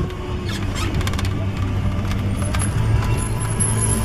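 Background music over a steady low hum with scattered clicks.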